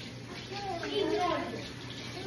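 An indistinct voice with wavering pitch and no clear words, over a faint steady low hum.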